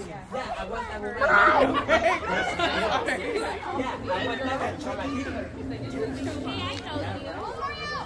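Several people chattering at once, voices overlapping with no single clear speaker, over a steady low hum that starts about two seconds in and fades near the end.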